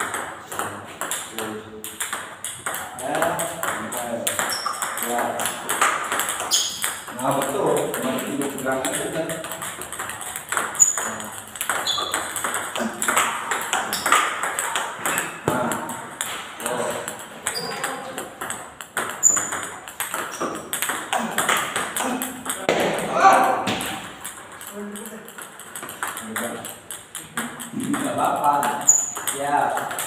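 Table tennis practice: the ball is struck back and forth with rubber paddles and bounces on the table, a quick run of sharp clicks throughout.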